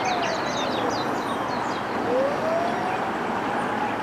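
Steady wash of distant road traffic, with a far-off siren wailing: its pitch falls during the first second and rises again about two seconds in. Small birds chirp near the start.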